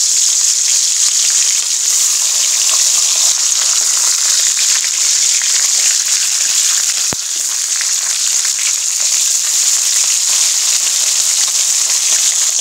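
Carp head, rubbed with salt and turmeric, frying in hot soybean oil in an aluminium karahi: a loud, steady sizzle, with a single brief click about seven seconds in.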